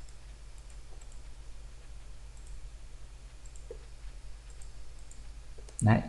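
A few scattered, faint computer mouse clicks over a steady low hum.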